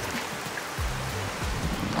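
Heavy rain falling on a river's surface, a steady even hiss, with background music and its low bass notes underneath.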